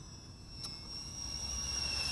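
GoolRC G85 micro FPV racing quadcopter in flight, its 1106 6000KV brushless motors and five-blade props giving a thin high whine that drifts slightly up and then down, getting louder toward the end. A faint tick sounds about two-thirds of a second in.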